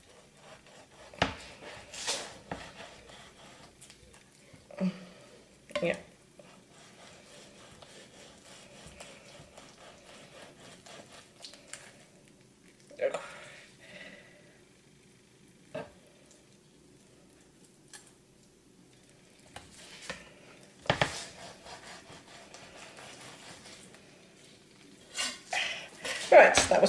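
Kitchen knife sliding flat along a raw salmon fillet to cut it off its scaly skin, with a soft scraping of the blade. Scattered short knocks of the knife and fish against the cutting board.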